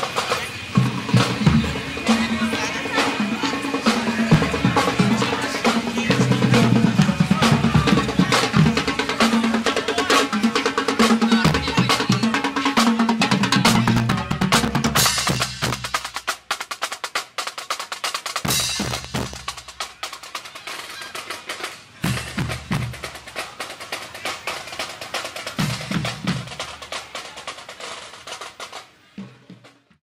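Parade drumline playing: snare and bass drums in a busy rhythm with rolls, thinning after about halfway into separate groups of hits, and dying away near the end.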